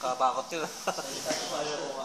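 A man speaking in short phrases, with a steady hiss behind the voice.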